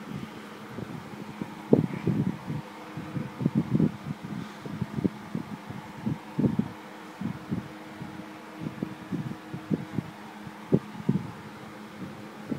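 Irregular low bumps and rubbing from a phone being moved about in the hand while filming, over a steady low hum like a fan's.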